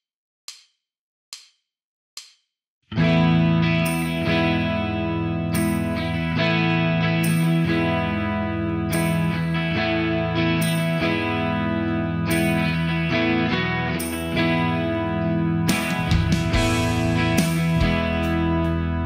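A count-in of evenly spaced clicks, then about three seconds in a multitrack rock demo comes in: electric guitar played through the Enya Nova Go Sonic's built-in amp modelling and effects, layered with bass guitar in a full band arrangement.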